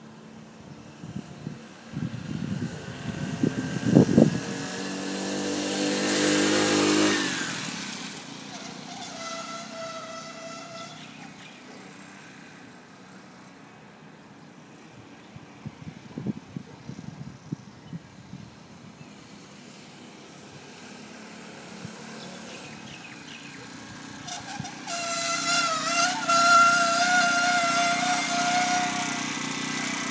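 A four-stroke motorised bicycle engine running as the bike rides past, loudest a few seconds in, with its pitch dropping as it goes by. Near the end the bike returns and stops with a steady high-pitched brake squeal; the brakes are called shocking and make so much noise.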